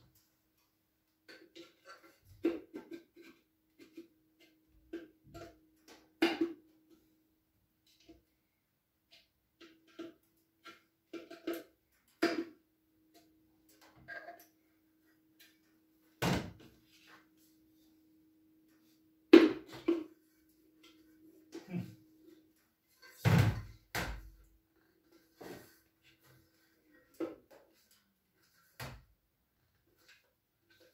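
Metal pump parts and hand tools being picked up, handled and set down on a workbench while an electric water pump is put back together: scattered knocks and clinks, with a handful of louder thumps, over a faint steady hum.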